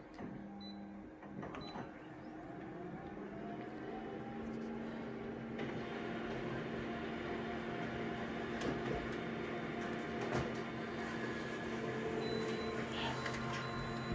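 Full-colour photocopier starting a print run: its motors spin up with a rising whine over the first few seconds, then settle into a steady mechanical hum as the copy feeds through, with a few sharp clicks.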